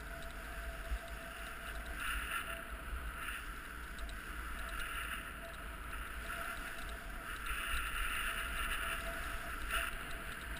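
Edges scraping and carving across firm, hard-packed groomed snow on a downhill run, the hiss swelling with each turn, over a steady low wind rumble on the camera microphone.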